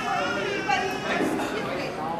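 Speech: a person talking into a microphone, with no other sound standing out.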